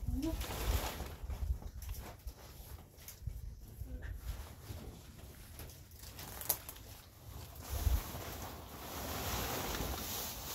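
Rustling and handling noise of tent fabric and plastic sheeting as a pop-up tent is set up, with uneven low rumbling, a sharp click about six and a half seconds in and a dull thump near eight seconds.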